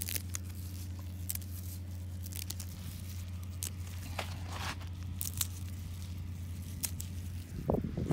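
Dill stems being snapped and pulled by a gloved hand, with scattered sharp snaps and rustling of the feathery foliage, over a steady low hum.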